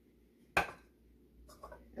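A single sharp crack about half a second in: an egg struck against the rim of a small glass bowl to break it.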